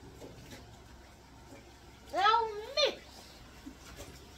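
A voice saying a drawn-out, high-pitched "Now" about two seconds in, its pitch rising and then falling, over faint kitchen room noise.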